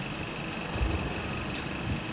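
Steady room hiss and hum between spoken remarks, with a few faint low thumps and one short click.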